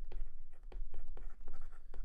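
A stylus writing on a tablet screen, making a quick run of short taps and scratches as letters are written by hand.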